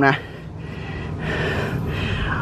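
A long breath out close to the microphone, starting about half a second in and lasting over a second, after a short spoken word.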